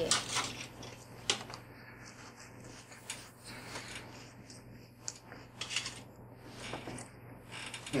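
Scattered light clicks and scrapes of a metal fork against a paper plate and a small sardine tin during eating, over a faint steady hum.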